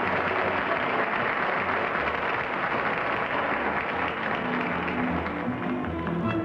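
Studio audience applauding steadily, with music playing low underneath. Near the end the clapping thins and the music comes forward.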